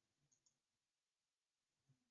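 Near silence: the recording is silent between the presenter's sentences.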